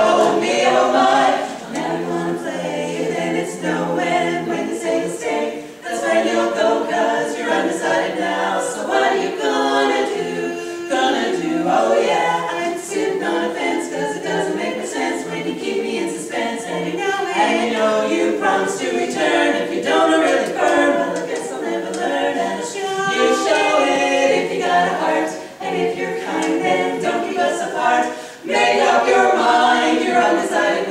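Women's a cappella quartet singing in close harmony, four unaccompanied voices, with brief breaks between phrases.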